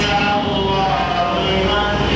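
A man's voice, the imam leading congregational prayer, chanting an Arabic prayer call in long held melodic notes. It marks the congregation's move from bowing to standing.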